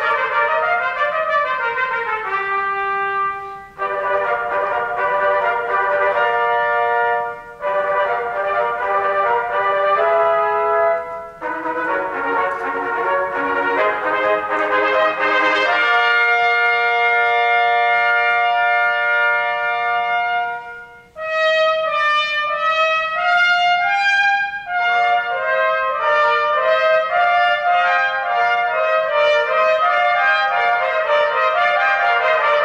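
Three trumpets playing together in a concert hall, in phrases broken by short pauses, opening with a downward slide in one part. A long held chord sits in the middle, followed by quicker moving notes near the end.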